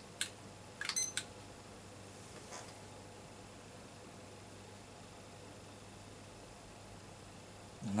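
A glass beaker clicks down onto an aluminium block on a hot plate. About a second in there are a few button clicks and a short electronic beep as a Salter digital timer is started. After that there is only a faint steady room hum.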